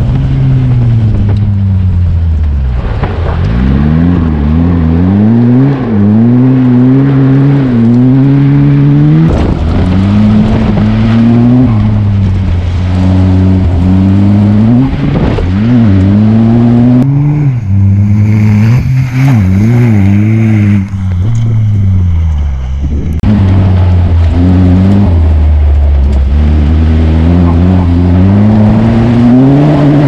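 Ariel Nomad 2's turbocharged four-cylinder engine being driven hard on a gravel rally stage, revving up through the gears and dropping back again and again as the driver lifts off and brakes for bends.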